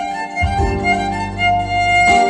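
Live hip-hop violin: the violin plays a melody with long held notes over electric bass and keyboard, the bass coming in about half a second in.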